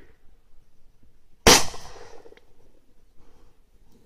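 A single rifle shot about one and a half seconds in: one sharp report fired close by, with a short trailing echo. It is the sniper's shot at the grenade launcher operator.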